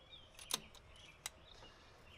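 Two faint sharp clicks, the first about half a second in and a weaker one about three-quarters of a second later, over quiet outdoor background.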